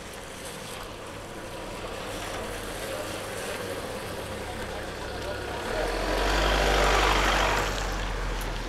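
A car driving past at close range on a wet road: engine running and tyres hissing on the wet asphalt, growing louder as it approaches and loudest about six to seven and a half seconds in, as it goes by, then falling away.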